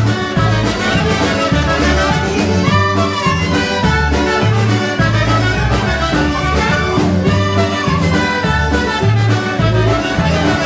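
Live polka band playing an instrumental passage: clarinet and brass lead over concertina, bass, drums and keyboard, with a bass line stepping on the beat.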